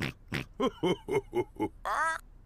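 Cartoon pig voices snorting: a quick run of short oinking grunts, about four a second.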